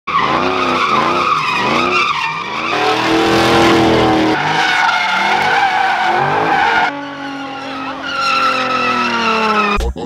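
Engines revving hard, their pitch wavering up and down, with tire squeal as a pickup and a Dodge Charger slide and spin donuts on asphalt. The audio comes in several short clips cut together, and the engine pitch jumps at each cut.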